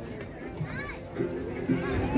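Then ritual performance music: from about a second in, held sung or played notes sound and restart several times, with high children's voices from the onlookers.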